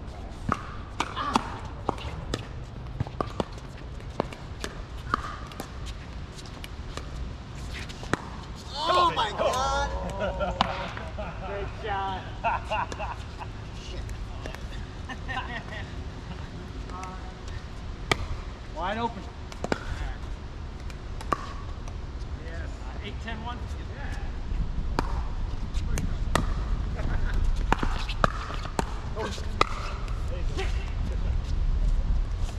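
Pickleball paddles hitting a plastic pickleball in rallies: sharp, hollow pocks at irregular spacing, bunched near the start and again in the last third, with a lull in the middle between points.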